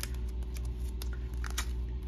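A few light clicks and rustles as a clear plastic stamp-set package is handled and opened, over a steady low hum.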